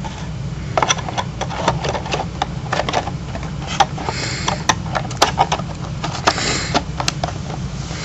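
Handling of a cardboard box as items are packed back into it: scattered knocks, taps and rustles, irregular throughout, over a steady low hum.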